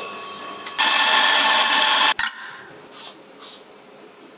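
Espresso bar equipment runs loudly for about a second and a half, then cuts off with a sharp click. A couple of short soft knocks follow.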